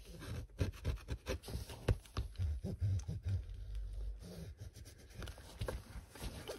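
A flat plastic smoothing tool and fingertips rubbed and scraped over a diamond-painting canvas and its cover paper: irregular scratchy strokes with small clicks and soft knocks against the table.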